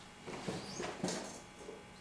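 Faint, brief rustles and soft knocks of gear being moved around inside a large duffel bag, a few short sounds about half a second and one second in.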